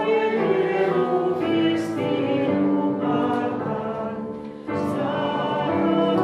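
A congregation sings a hymn together, accompanied on a digital piano, with a new line starting strongly about two-thirds of the way through.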